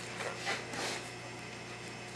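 Faint rubbing and rustling of hands gripping and twisting at a tight lid on a small plastic toy tub, with a few soft swells in the first second.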